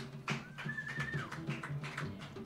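Live band playing a short repeating figure on plucked strings in the low register, with sharp taps over it. A high tone glides up and holds briefly near the middle.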